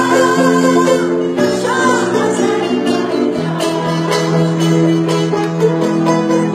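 Azerbaijani tar played live, its plucked notes running over a piano accompaniment.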